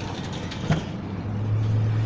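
A single sharp click as the Toyota 4Runner's liftgate latch is released, then a steady low vehicle engine hum that swells from about halfway through.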